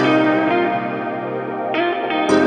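Instrumental passage of a funky 80s-style synth-pop band song, an electric guitar with effects to the fore playing chords that change about a second and three-quarters in.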